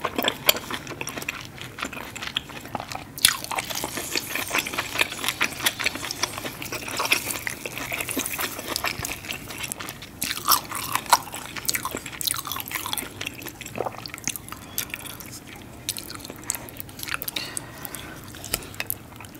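Close-miked eating: wet chewing and lip smacking on sauce-covered lobster and king crab meat, with many small sticky clicks and squelches of the thick seafood sauce.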